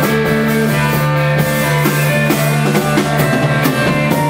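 Live psychedelic blues-rock band playing an instrumental passage: two electric guitars and an electric bass over a drum kit, with a low bass note held throughout and steady drum and cymbal hits.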